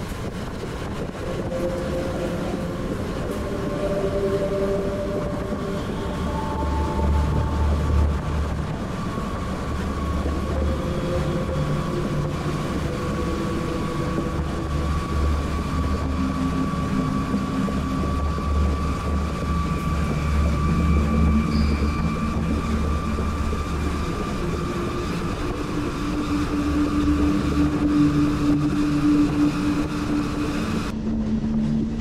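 Passenger train running along the track, heard from inside the carriage: a steady rumble of wheels on rail with a deep low drone that swells through the middle, and a faint steady hum from the running gear.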